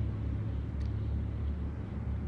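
Steady low background hum, with a faint click a little under a second in.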